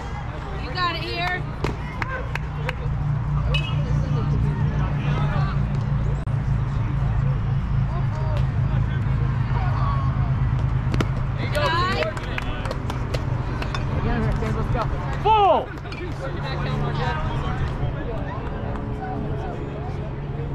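Scattered voices and calls from players and spectators at a youth baseball game, with a loud short call about fifteen seconds in, over a steady low rumble.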